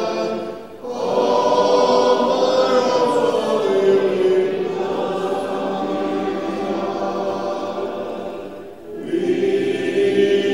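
Church congregation singing a hymn a cappella, the voices held on long notes, with a brief break between phrases about a second in and another near the end.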